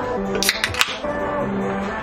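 A can of Diet Coke being opened: a few sharp cracks from the pull tab and a brief fizz from about half a second in. Background music with steady held notes plays throughout.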